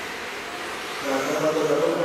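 Electric radio-controlled touring cars racing on an indoor carpet track, giving a steady whir of small motors and tyres. A man's voice joins in about a second in.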